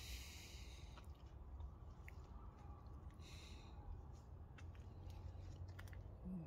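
Near silence: faint outdoor background with a steady low rumble and a few soft ticks.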